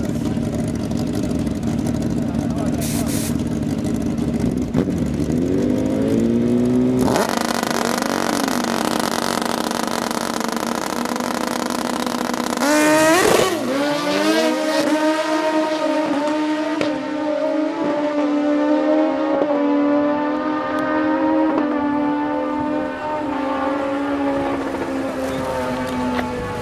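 Two drag-racing motorcycles sitting at the start line, engines idling and blipping. They launch about 13 seconds in with a sharp rise in engine pitch, then accelerate away. Each gear climbs and steps down at an upshift roughly every two seconds as the bikes fade down the strip.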